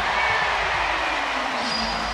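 Arena crowd cheering steadily after a made basket by the home team.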